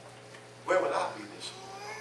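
A person's voice: a short, loud vocal sound about two-thirds of a second in, followed by quieter drawn-out voice sounds that fall slightly in pitch near the end.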